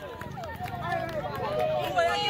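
Several voices of players and spectators shouting and calling over one another outdoors on a football pitch, no single clear speaker.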